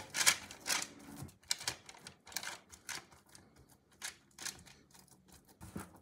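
Fingertips pressing and dimpling oiled pizza dough in a metal baking tray: a run of irregular soft taps and clicks.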